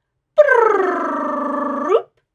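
A woman's voice making one long, wordless sliding "ooo" as a playful sound effect for tracing the hoop of a number nine. It starts high and loud, glides down and holds, then sweeps up sharply at the end.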